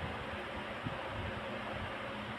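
Steady low background hiss with a faint steady hum: room tone with no speech.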